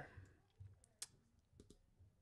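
Near silence with a few faint, sharp clicks, the sharpest about a second in.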